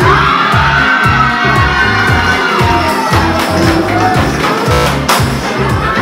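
Music with a steady thumping beat, with a crowd cheering and shouting over it, including a long drawn-out shout near the start.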